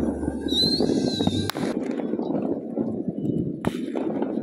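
Crunching footsteps on packed snow. A brief high squeal comes about half a second in, and sharp cracks come about a second and a half in and again near the end.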